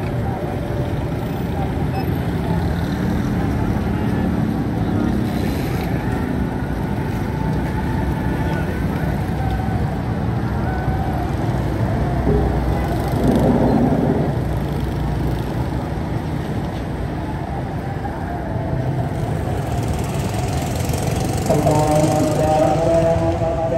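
Busy street traffic: motorcycle and motorcycle-rickshaw engines running steadily, with people's voices mixed in.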